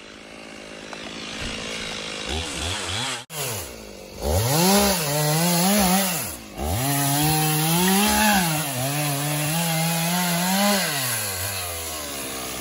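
Two-stroke chainsaw cutting into the base of a tree trunk, the engine revving up and down as it is throttled, with short dips between cuts. It drops to idle near the end.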